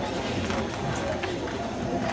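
Indistinct background chatter of spectators, with a few light knocks.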